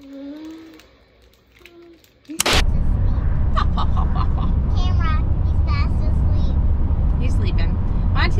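Loud, steady low rumble of a moving car heard from inside the cabin, starting abruptly about two and a half seconds in with a sharp click at the cut; before it, only soft voices in a quiet room.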